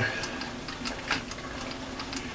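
Metal-working lathe running while the two spring-loaded wheels of a straddle knurling tool roll a knurl into a mild steel workpiece, with faint irregular ticks about two a second. The wheels are still bedding in, the pattern only beginning to form.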